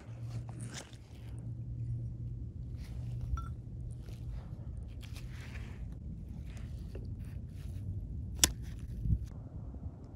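Scattered clicks and rustles of a worn driveshaft center support and its bearing being handled, with one sharp click about eight and a half seconds in, over a steady low hum.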